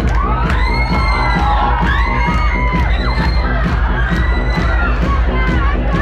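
A dance track played loud over a club sound system, with a heavy, steady bass beat. The crowd cheers and shouts over it.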